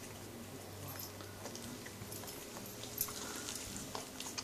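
A litter of young puppies suckling at their mother: a scatter of small wet clicks and smacks, with one sharper click about three seconds in, over a faint steady low hum.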